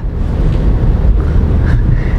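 Steady low rumble of engine and road noise heard inside a Mini Countryman's cabin while it is being driven.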